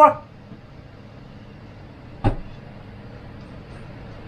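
A single sharp click from the lid of a stainless steel steamer pot as it is lifted off, a little over two seconds in, over a steady low background hiss.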